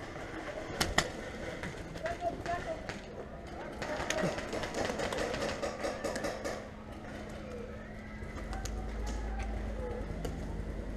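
Paintball markers firing: a sharp pop about a second in and scattered quieter pops, with indistinct distant shouting across the field.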